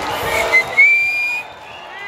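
Concert audience cheering, cut through by a loud whistle from someone in the crowd: a short blast, then a longer, slightly rising note of about half a second. The crowd noise drops off just after it.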